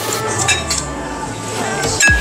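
Metal cutlery clinking against ceramic plates while eating, a couple of short clinks in the first second.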